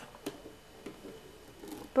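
Faint scattered clicks and soft rustling of plastic knitting needles and yarn being handled while knitting.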